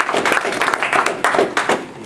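Audience applauding, a dense patter of hand claps that thins out and fades near the end.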